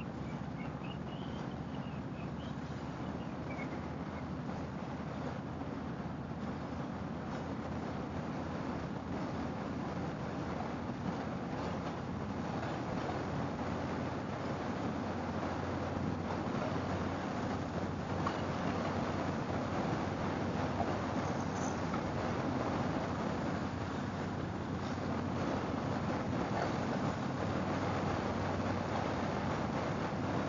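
Harley-Davidson V-twin motorcycle cruising steadily at highway speed. The engine's low hum sits under wind rushing past the rider and tyre noise, and the sound grows a little louder toward the end.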